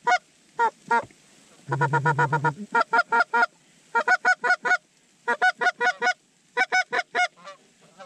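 Goose calls blown in quick runs of short, clucking notes, about six a second, in bursts of four to six with brief gaps, with a faster, deeper run about two seconds in. The calling works an incoming flock of geese toward the decoys.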